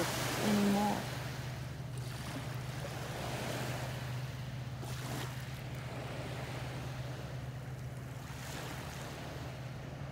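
Calm sea waves washing steadily, with a steady low hum underneath.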